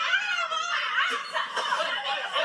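Voices arguing in a played-back phone recording of a quarrel, sounding thin and distant, with raised voices and swearing.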